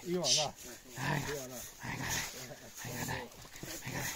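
Young German hunting terrier growling in short bouts as it bites and worries a dead wild boar.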